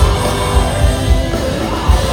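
Live band playing loud rock-funk music, with a steady bass drum beat about twice a second.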